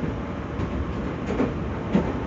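Running noise of a Meitetsu electric train heard from inside the car: a steady rumble of wheels on the rails, with a light knock near the end.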